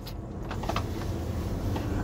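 Low steady rumble that grows a little louder toward the end.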